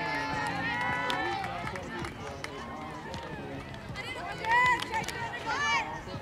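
Several high-pitched girls' voices shouting and cheering over one another from the softball dugout and stands, with the loudest shout about four and a half seconds in, and a few sharp knocks among them.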